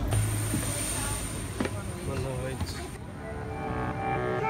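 Background noise in an airport boarding bridge: a steady hiss with a thin high whine and a low hum, a few faint clicks and a brief snatch of distant voices. Music comes in about three seconds in.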